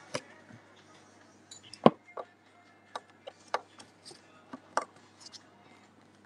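Scattered, irregular clicks and knocks of handling, heard over a phone video call, the loudest nearly two seconds in, over a faint steady low hum.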